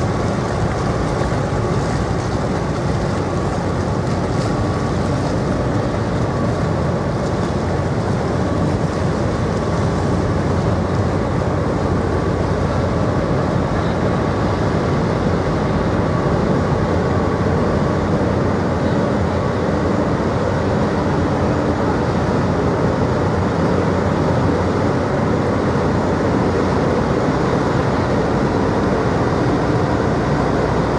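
Engines and machinery of a 72 m offshore supply vessel running steadily as she moves slowly astern close by: an even, low running noise with a faint steady whine over it.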